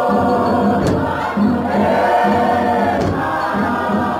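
Choir singing a gospel song in several voices over a steady beat, with a sharp percussive stroke now and then.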